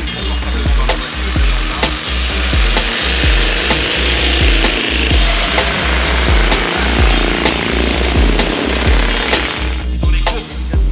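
A vintage tricyclecar's engine running hard as the car passes, rising to its loudest midway and fading near the end, over a backing track with a steady bass beat.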